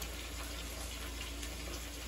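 A steady hiss over a constant low hum, with no distinct events.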